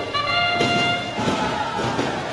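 Arena match-start sound: a brass trumpet fanfare with held notes through the first second or so, giving way to crowd noise, marking the start of the autonomous period.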